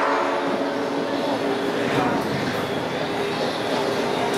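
Steady hubbub of a crowd of people talking and moving about in a busy hall, with a brief pitched sound rising above it at the start.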